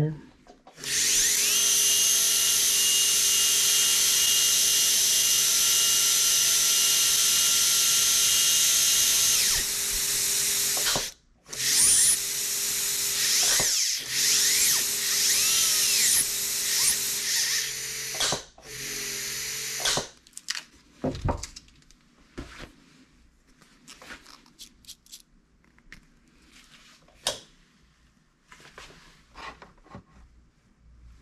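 Brasseler Forza F5 electric high-speed dental handpiece spinning a bur with a steady high whine for about ten seconds, then in three shorter runs whose pitch dips and recovers as the bur is pressed into a wooden block. The test checks that the freshly tightened chuck holds the bur under load. After about twenty seconds the motor stops and only clicks and handling knocks follow.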